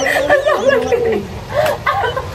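Women laughing hard: high-pitched, cackling laughter in short broken peals.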